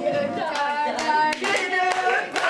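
A group of voices singing a show tune together, with hand claps along with the song.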